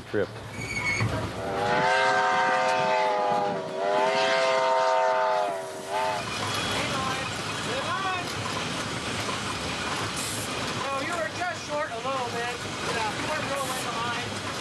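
Steam locomotive whistle sounding two long blasts, one right after the other, each a steady chord; the train's running noise continues beneath, with voices after it.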